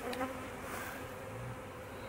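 Honeybees buzzing in a steady hum around an open hive and a frame of brood held up in the open air.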